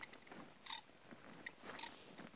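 Faint metallic clicking and light jingling of a walking horse's tack, with two brief louder clusters about a second apart.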